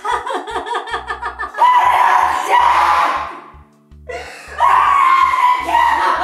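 A woman's laughter over trailer music with a pulsing low bass. It starts as rapid ha-ha pulses and breaks into two long, loud held stretches with a short pause between them.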